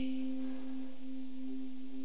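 Keyboard holding a single steady low note, unchanging in pitch and level.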